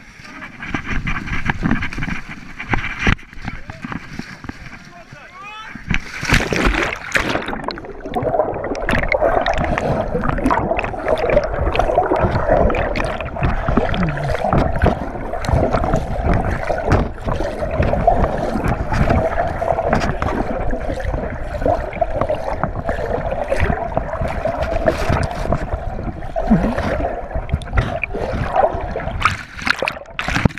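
A big splash about six seconds in, then continuous muffled gurgling and sloshing of water close against an action camera's waterproof housing as it goes under.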